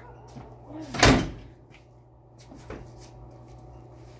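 A car door slammed shut once, about a second in, over a steady low hum.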